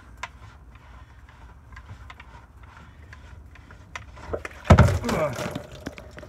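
Clear plastic water-filter housing being worked loose: faint scrapes and small clicks, then a sudden heavy thump near the end, followed by a short wordless grunt.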